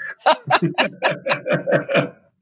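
A person laughing in a run of quick, even bursts, about five a second.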